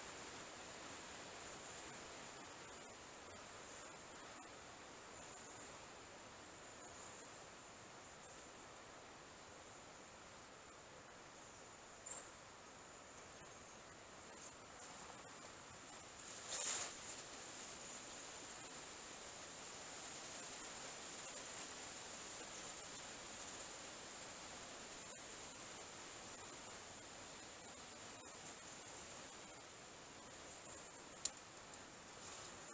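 Faint steady hiss with a thin, high-pitched steady whine, broken by a brief knock or rustle about 17 seconds in, close to the microphone, as the angler moves past it.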